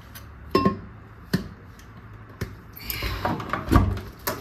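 Light clicks and knocks of the plastic lid and glass jug of a new Russell Hobbs blender being handled, three separate ones in the first couple of seconds. Then a busier stretch of rustling and knocking as the lid is fitted onto the jug, ending in the loudest knock just before the end.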